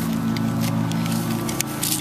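Small engine of lawn-care equipment running steadily in the background, a constant low drone, with short rustles and clicks of the nylon vest pouch being handled close to the microphone near the end.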